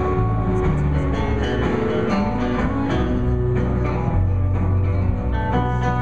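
A live acoustic band playing an instrumental passage: plucked and strummed acoustic guitars over deep, held bass notes, without singing.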